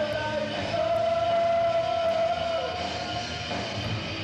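Live rock band, with one long steady high note held for about two seconds that slides down at its end.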